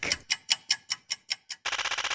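A ticking sound effect: sharp, evenly spaced ticks about five a second that grow fainter, then a much faster, rattling run of clicks from about one and a half seconds in.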